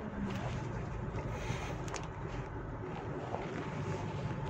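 Steady cabin noise inside a moving 2022 Mitsubishi Pajero Sport Dakar: a low hum from its diesel engine mixed with road noise.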